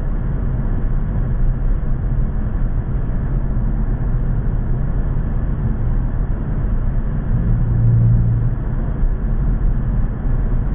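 Car driving steadily through a long road tunnel, heard from inside the cabin: a continuous low rumble of engine and tyre noise, swelling briefly about eight seconds in.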